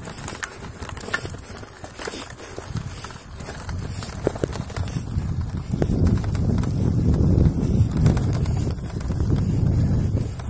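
Vehicle driving on a loose gravel road: a low rumble with wind buffeting the microphone and scattered clicks of stones under the tyres, growing louder in the second half.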